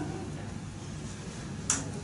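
A single sharp click of a laptop key being struck, over a low steady room hum.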